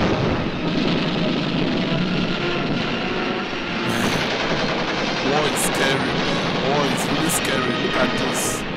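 Battle sound effects of continuous gunfire and explosions mixed with music, as in a war documentary soundtrack.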